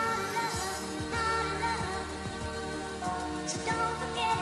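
Early hardcore dance music mixed in a DJ set: a fast, steady kick drum, each kick a falling low thud, under a wavering melodic line.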